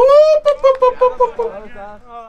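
A person's loud, drawn-out shout, rising in pitch and then held with a wavering pitch before it breaks up and fades: a celebratory yell after a goal.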